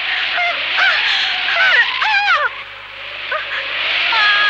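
High-pitched voices calling out in short, sharply rising and falling cries, over steady tape hiss. The cries pause briefly a little past halfway through.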